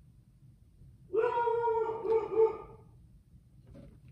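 A dog giving one long, high whine at a steady pitch, lasting about a second and a half, starting about a second in.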